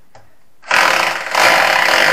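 Electric hammer drill boring a 7 mm hole into a plastered masonry wall for a wall plug. It starts about two-thirds of a second in and runs loud, with a brief dip about half a second later.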